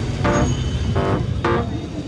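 Background music: plucked guitar notes about twice a second over a steady bass line.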